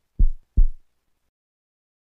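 Heartbeat sound effect: a single lub-dub, two low thumps less than half a second apart, just after the start.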